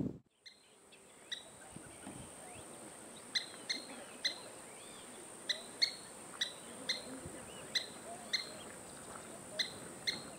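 Couch's kingbird giving a string of short, sharp kip calls, about a dozen at irregular gaps of half a second to a second. A steady, thin, high whine runs beneath them.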